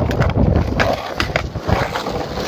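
Skateboard wheels rolling on asphalt, a steady gritty rumble, with a few sharp clicks and knocks through it.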